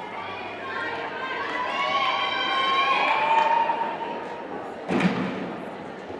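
Voices of spectators and gymnasts talking and calling out, echoing in a large gymnasium hall, with a single thud about five seconds in.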